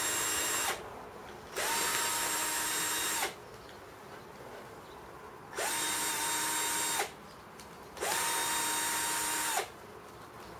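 Cordless drill-driver spinning in short runs, driving out the screws that hold a plasma cutter torch's handle together. One run ends about a second in, then come three more of about a second and a half each, each with a steady motor whine that rises briefly as the motor spins up.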